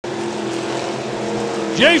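Several IMCA stock cars' V8 engines running at speed around a dirt oval, heard as a steady drone that cuts in suddenly.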